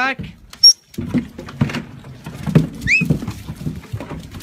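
Sheep jostling and shuffling close by, their hooves and fleece scuffing in wet grass and mud, with irregular knocks. A single sharp click about half a second in and a couple of short high chirps near the three-second mark.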